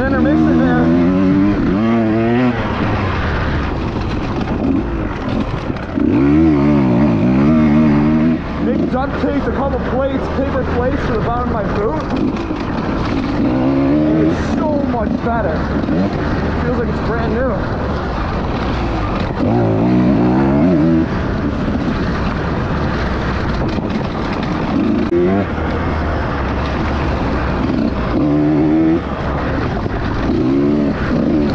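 Husqvarna TE 150 two-stroke enduro motorcycle engine under way on a dirt trail, its pitch climbing and dropping over and over as the throttle is opened and closed through the turns, over a steady low rumble.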